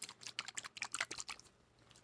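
A small plastic bottle of thin liquid glue shaken close to the microphone: a quick run of clicks and sloshing that stops about a second and a half in. The glue sounds like water, thinner than a glue should.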